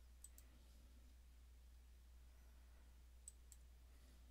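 Near silence over a low steady hum, broken by two pairs of faint computer mouse clicks, one pair just after the start and another about three seconds later.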